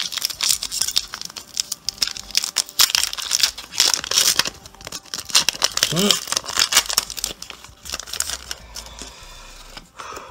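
Foil booster-pack wrapper being crinkled and torn open by hand: a dense crackling rustle that dies away about eight seconds in.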